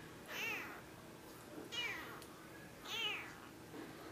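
Cat meowing: three short, high-pitched meows about a second apart, each rising then falling in pitch.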